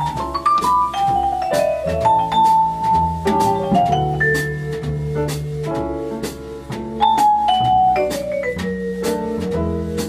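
Jazz vibraphone soloing in quick runs of struck notes that climb and fall, with piano, upright bass and drums playing along.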